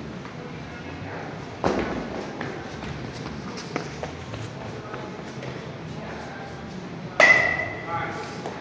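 Two sharp knocks echoing in a large indoor hall, about a second and a half in and again near the end. The second is louder and rings briefly with a high metallic ping. Faint voices underneath.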